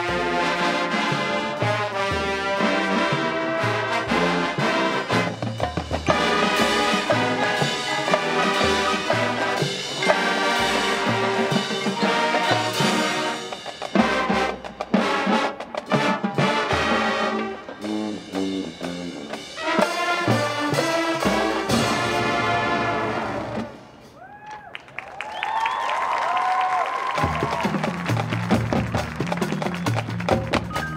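High school marching band playing its field show: brass with trombones and trumpets to the fore, over drums and front-ensemble mallet percussion. About three-quarters of the way through, the music drops briefly to a quiet passage of ringing tones before the band comes back in.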